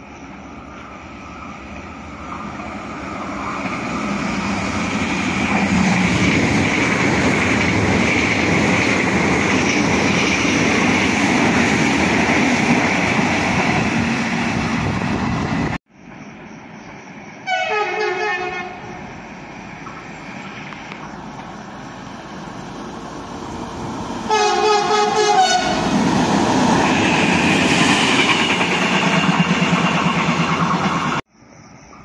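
Triple set of CP 2240-series electric multiple units approaching and running through, its wheel and running noise building to a loud, steady rush. After a cut there are two short train-horn blasts about seven seconds apart, and the running noise of the next electric train (CP 2270-series units) rises as it approaches near the end.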